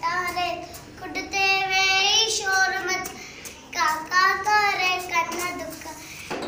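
A young girl singing a Sindhi nursery rhyme on her own, with no accompaniment, in short phrases with some notes held.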